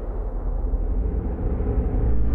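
Deep rumbling swell of a TV channel's logo-sting sound effect, growing louder toward the end.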